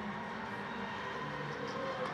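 Steady background ambience of an indoor football venue: a low, even crowd murmur and hall noise with no distinct events.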